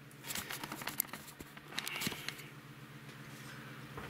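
A run of light clicks and taps from hands handling small objects, such as screws or a screwdriver, that dies away about two seconds in, leaving a steady low hum.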